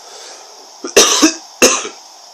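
A man coughs twice in quick succession into his hands, about a second in.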